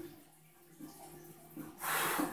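Faint steady room hum, then near the end a sharp, noisy breath drawn in, a lifter bracing under a loaded safety squat bar before the lift.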